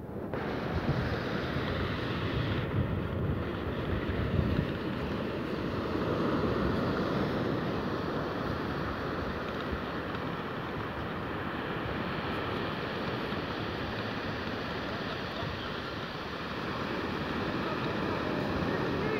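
Steady wind rushing across the microphone over the continuous wash of surf breaking on a beach.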